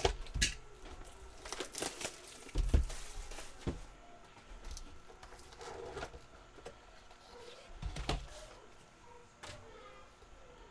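Plastic shrink wrap crinkling and tearing as it is stripped off a cardboard trading card box, then the box being handled and opened on a table. Scattered crackles and clicks, with a few knocks of the box on the table, the loudest about three seconds in.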